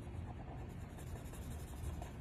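Faint scratching of a pen on a drawing board as someone writes or draws, over a low steady rumble.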